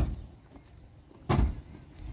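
A car door slamming shut, its thud dying away at the very start, then a second heavy thump about a second and a quarter in.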